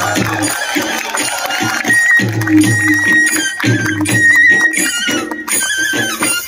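Tripuri folk music for the Hojagiri dance, played loud: a high melody line held and trilled over a repeating deep beat, with sharp percussive clicks.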